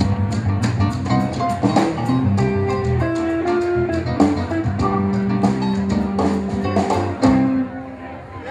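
Live jazz band playing instrumentally: electric guitar lines over keyboard, bass and drums. The tune closes on a final chord, and the sound drops away near the end.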